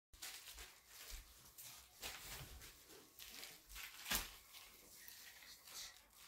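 Faint scattered knocks and rustles, with one sharper knock about four seconds in.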